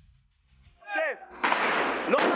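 A brief sound falling in pitch, then a loud burst of weapons fire from about halfway in, lasting over a second, in combat footage.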